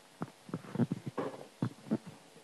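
Handling noise on a handheld microphone: about six soft, low thumps at irregular intervals as the mic is lowered and shifted in the hand.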